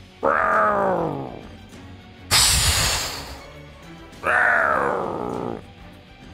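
Two drawn-out monster screeches, each falling in pitch, with a loud hissing blast between them, over quiet background music.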